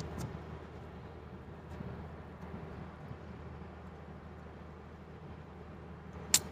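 Faint, steady low hum of a distant motor, with a few faint ticks over it.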